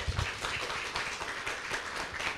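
Audience applauding: many hands clapping at once.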